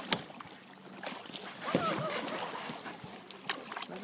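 Kayak paddling: water swishing and dripping from the paddle strokes, with a sharp knock just after the start and a few lighter clicks later. A short vocal sound comes about two seconds in.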